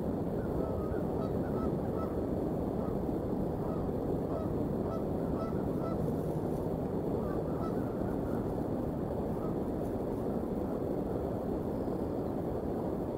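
Geese honking at a distance, many short calls repeating throughout, over a steady low background rumble.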